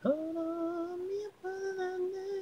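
Unaccompanied solo singing voice, an isolated a cappella vocal: a note that scoops up into pitch and is held for about a second, then after a brief breath a slightly higher note held steady.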